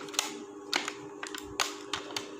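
Clear plastic blister tray crinkling and clicking as it is handled, a few sharp irregular clicks over a steady low hum.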